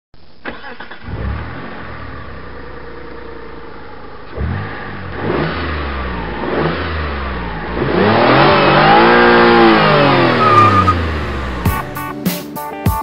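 Car engine starts and runs at idle, blips its throttle a few times, then revs up in one long rise and falls back near the end.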